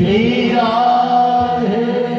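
A man chanting a Hindu devotional refrain in long held, slowly bending notes over a steady low drone.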